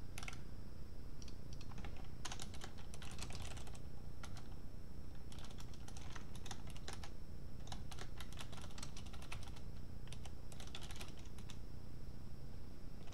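Typing on a computer keyboard: bursts of rapid key clicks separated by short pauses.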